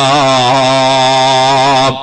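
A man's voice chanting one long held note, wavering slightly in pitch and breaking off just before the end, over a steady low hum.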